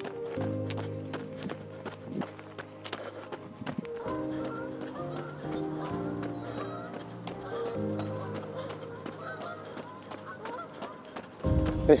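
Background music of sustained chords, over the quick, steady footfalls of a runner on a paved path, a few steps a second.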